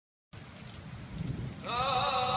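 Silence, then about a third of a second in a rain-like noise fades up as the opening ambience of a lofi track. Near the end a sustained note with many harmonics slides up into pitch and holds as the music begins.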